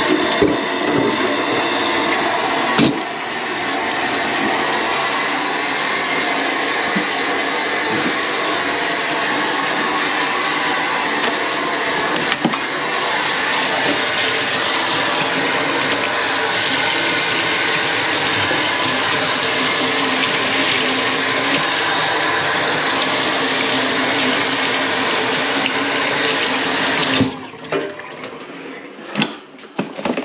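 Kitchen tap running steadily into a stainless-steel sink while rubber-gloved hands are rinsed under the stream. The water is shut off suddenly near the end, and a few light knocks and rustles follow.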